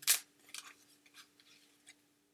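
Oracle cards being handled and shuffled: a sharp papery snap right at the start, then scattered faint clicks and rustles over a faint steady hum.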